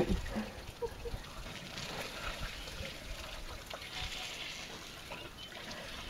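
African elephants drinking: faint trickling and dribbling of water drawn up and let out by their trunks, with scattered small clicks.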